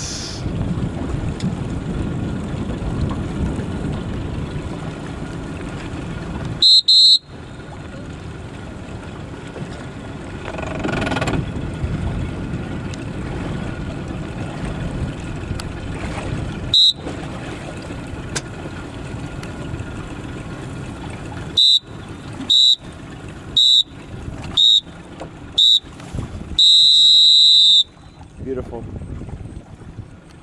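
Sailing race start horn sounding a countdown over steady wind and water noise. There is a half-second blast about seven seconds in and a short blast ten seconds later, then five short blasts a second apart and a long blast of about a second and a half, which is the start signal.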